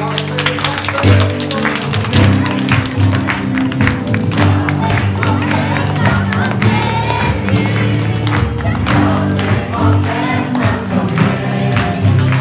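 A worship song with steady instrumental backing, sung by a congregation with hand clapping.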